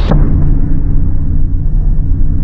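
Loud, deep bass sting for a title card: steady low held tones with almost no treble, cutting in suddenly.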